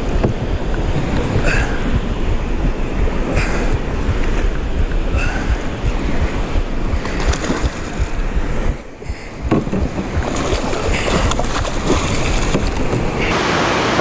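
Wind buffeting the microphone over the rush of river current, steady and mostly low rumble, with short faint sounds recurring about every two seconds in the first half.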